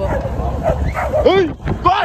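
A dog barking several times at a passing vehicle, over the low rumble of the moving vehicle.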